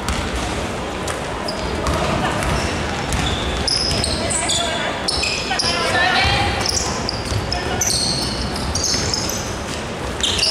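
A basketball being dribbled on a wooden court during play, with many short sneaker squeaks on the floor and players' voices calling out, echoing in a large sports hall.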